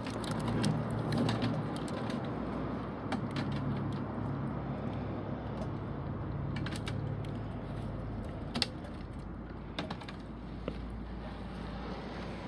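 Waste cooking oil poured in a thin stream through nested mesh strainers into a funnel, with a steady background and scattered light clicks and ticks. The stream has stopped by the end.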